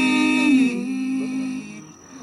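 Three male voices singing a cappella in close bluegrass gospel harmony, holding a long chord on the last word of a line. About half a second in, the upper voices glide down and the chord thins, and the remaining notes fade out near the end.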